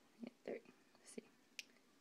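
Quiet, half-whispered speech, a few short words, with a couple of faint sharp clicks in near silence.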